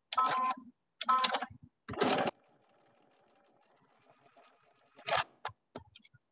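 Sewing machine stitching in short bursts while chain piecing small quilt four-patch units: three quick runs of stitching with a motor whine in the first couple of seconds, another run about five seconds in, then a few sharp clicks.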